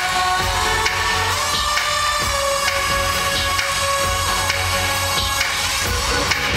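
Loud pop concert music played through an arena sound system, heard from the audience. It has a steady bass beat under long held notes and no clear vocals.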